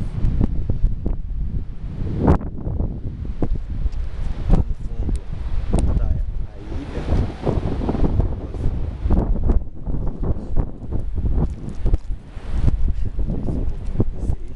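Wind buffeting the camera's microphone on an exposed summit: a loud, gusty low rumble that swells and drops, with scattered pops and crackles.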